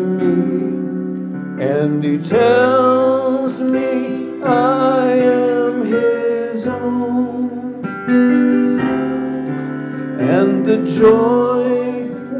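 A man singing a slow hymn, holding long notes with vibrato in phrases a second or two long, to his own accompaniment on a Yamaha electronic keyboard.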